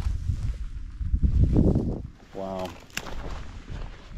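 A hiker walking through dry brush, with loud low rumbling thumps on the microphone of his camera. A short hum of voice comes about two and a half seconds in, then a sharp click just before three seconds.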